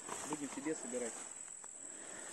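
Grasshoppers chirring in the grass: a steady, high-pitched, unbroken drone.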